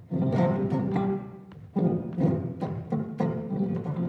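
Unaccompanied electric bass guitar played with a percussive finger technique, the fingers striking the strings on both the forward and the return stroke. It plays three quick runs of notes separated by short gaps.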